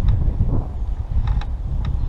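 Wind rushing over the microphone in flight under a paraglider, a steady low rumble, with a few faint clicks and creaks.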